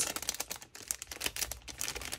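Clear plastic sleeve around sticker sheets crinkling as it is handled, a dense run of irregular crackles.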